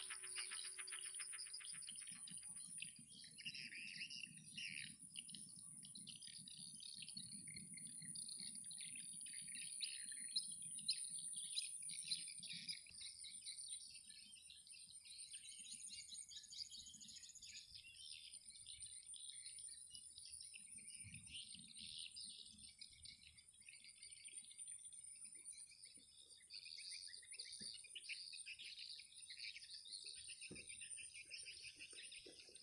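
Faint rural ambience: small birds chirping busily, over a steady high-pitched insect drone.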